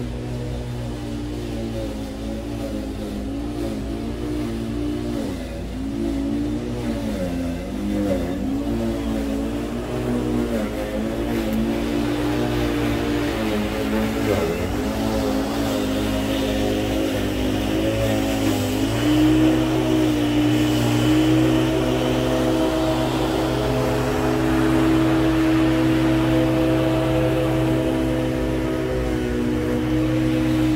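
Apache TurboCUT ZF6117 corded electric lawn mower running as it is pushed over the lawn. Its motor hum dips in pitch several times in the first half, then runs steadier and louder in the second half.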